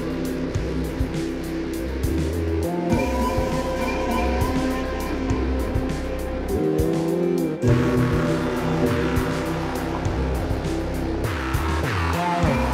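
Live electronic music played on synthesizer keyboards over a drum loop: sustained synth chords and tones with a steady beat. The bass drops out for about a second past the middle, then comes back.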